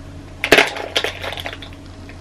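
Makeup products clicking and clattering as they are rummaged through in search of a lip product: one sharp knock about half a second in, then a run of lighter clicks.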